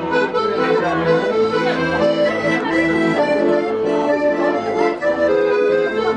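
Accordion played live, a dance tune with a melody over chords and regular bass notes about twice a second.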